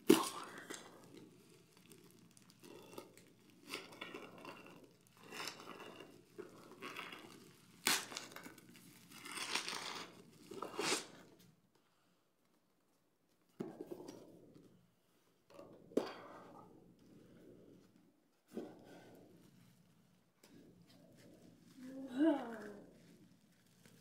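Shipping packaging being torn open and crinkled by hand, in irregular bursts of tearing and rustling broken by a few short pauses.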